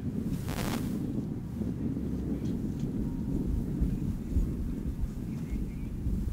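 Wind buffeting an outdoor microphone: a steady low rumble, with a brief hiss about half a second in.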